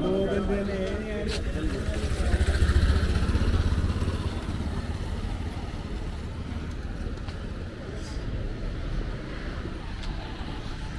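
A motor vehicle engine passes close by, building to its loudest about two to four seconds in, then easing into a steady hum of outdoor traffic.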